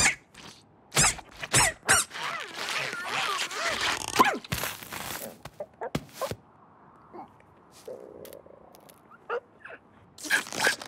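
Cartoon slapstick sound effects as an ostrich struggles with his head stuck in a plant pod: a sharp hit at the start, then a busy run of squeaks and thuds with muffled strained voice over the first five seconds, thinning to a few scattered small clicks.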